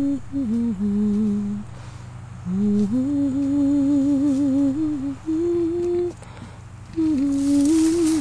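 A person humming a slow tune to the leopard, in long held notes, some with a wavering vibrato, broken into three phrases with short pauses between.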